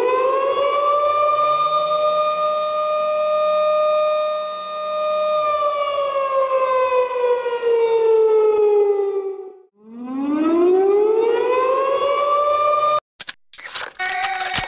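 A siren wailing: it holds a steady high note, slowly falls in pitch, breaks off just before ten seconds in, then rises again and cuts off abruptly about a second before the end, with a few short clipped fragments after it.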